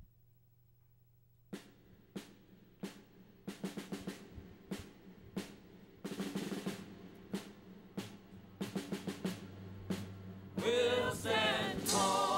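Recorded backing music starting up after a second and a half of quiet: drum hits, sparse at first and then more frequent, as the intro builds; near the end a pitched melody line comes in over the drums.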